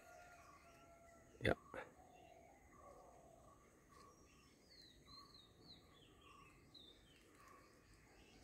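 Faint forest birdsong: a short note repeated about twice a second, with a few higher, curving chirps in the middle.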